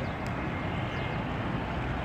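Outdoor town ambience: a steady rumble of street traffic below, with a few faint, short high chirps over it.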